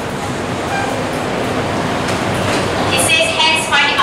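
Steady hiss of classroom background noise, with a brief faint squeak of a marker writing on a whiteboard early on.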